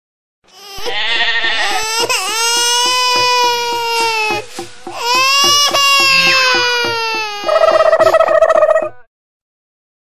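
A baby crying in long, pitched wails, with a short break about halfway through. It stops suddenly about a second before the end.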